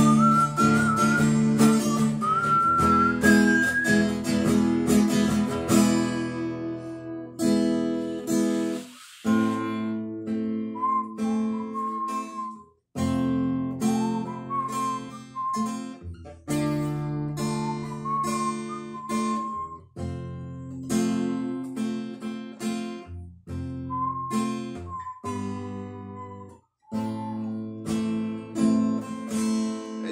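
Acoustic guitar played solo, picked and strummed chords in a slow ballad, with brief pauses between phrases. A whistled melody runs above it in places.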